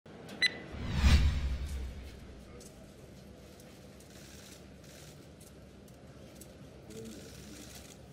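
A short, high ding followed at once by a loud whoosh with a low boom, the kind of edited transition sound used at the start of a news report; it fades within about a second, leaving faint background noise.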